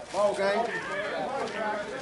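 Several people's voices calling and shouting over one another across an outdoor field, with no clear words, loudest just after the start.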